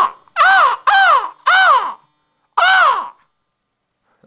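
A crow cawing five times, each caw rising and then falling in pitch, the last one after a short pause.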